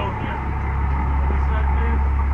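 Steady low rumble of a small passenger boat's engine running under way, with voices talking faintly over it.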